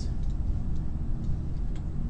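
A few faint computer mouse clicks over a steady low rumble of room noise.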